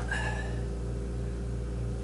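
Steady low background hum made of several steady tones, with no saw running.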